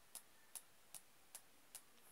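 Faint, regular ticking: five short, sharp ticks evenly spaced, about two and a half a second, against near silence.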